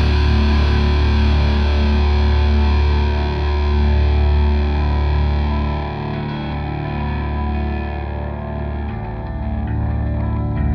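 Distorted electric guitar run through effects, holding a long sustained chord that slowly fades, its high end dying away first. Beneath it a deep low drone holds steady and then drops away about nine seconds in.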